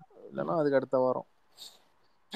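A man's voice making two short wordless vocal sounds, one after the other, about half a second in, heard over a voice-chat call's audio.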